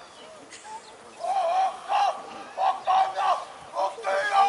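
A rugby team of young men chanting a haka in unison: after a quieter first second, the group shouts five or six short, forceful phrases in a steady rhythm.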